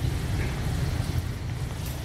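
Steady low rumble with a faint hiss: the background noise of the room and recording, with no events in it.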